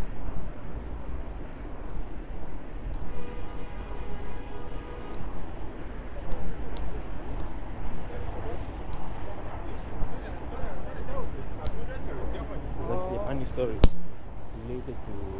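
City street traffic noise: a steady low rumble of passing vehicles picked up on a handheld phone microphone, with a held tone lasting about two seconds from about three seconds in and a few sharp clicks. A man's voice starts briefly near the end.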